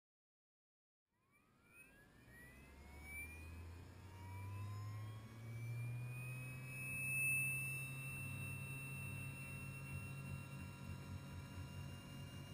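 Radio-controlled scale NH90 helicopter starting up: after about a second, a whine rises steadily in pitch over several seconds as the motor spools up and the main rotor begins to turn, with a low hum beneath.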